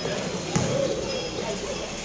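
A basketball bouncing on a concrete court, with one sharp bounce about half a second in, over the voices of players and spectators.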